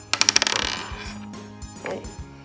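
A quick clattering rattle of small hard plastic pieces against a wooden tabletop: about half a dozen fast clicks with a brief ring, then one more single click near the end.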